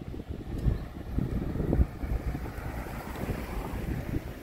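Wind buffeting the microphone in irregular gusts, strongest between about one and two seconds in, with a broader rushing noise swelling and fading in the middle.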